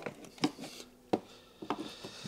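A screwdriver and fingers working at the plastic under-bonnet fuse box cover: light rubbing with three sharp plastic clicks.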